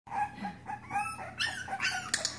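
A 5.5-week-old Boston Terrier puppy giving a string of short, high whines and yips, several in two seconds, some rising and falling in pitch.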